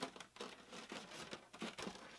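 Faint, irregular rustling and scraping of a styrofoam packing shell being handled and pulled open.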